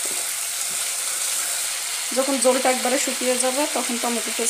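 Pigeon meat in a spicy masala sizzling in oil in a frying pan while it is stirred and turned with a spatula, a steady hiss with a few faint ticks. A voice comes in about halfway through.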